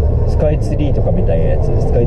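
A man talking inside a car cabin over the steady low rumble of the car's engine and road noise.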